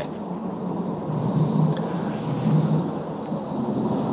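Steady low rumbling background noise with no clear source, and a faint click about one and a half seconds in.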